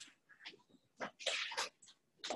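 Faint squeaking and scratching of a dry-erase marker on a whiteboard, in a run of short strokes that grow busiest from about a second in.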